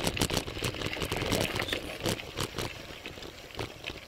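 Road bike riding noise: a low rumble with irregular clicks and rattles from the bike, growing sparser and quieter toward the end.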